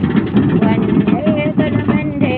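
A voice singing in long, wavering held notes over a dense, steady low rumble.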